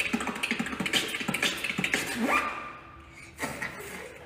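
A man beatboxing: a fast run of mouth-made drum hits and clicks for about two seconds, then a rising sweep, then softer sounds with one more short burst near the end.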